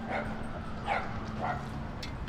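Dog making three faint, short whimpering sounds.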